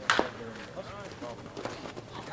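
Slowpitch softball bat striking the ball with one sharp crack just after the start, followed by players' voices calling out.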